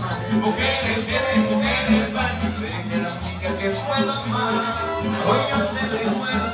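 Chanchona dance music, regional string band music from El Salvador, with a bass line in short repeated notes, a melody above it, and a shaker keeping a fast, even beat.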